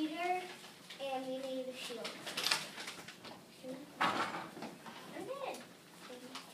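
Quiet, indistinct children's voices in short snatches with pauses between them, and a couple of brief rustling noises.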